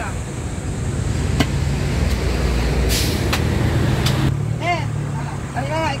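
A heavy road vehicle passing close by: a low engine rumble that swells and then drops off suddenly after about four seconds, with a short hiss near the middle. A few sharp knocks from a cleaver chopping the roast pig on the table.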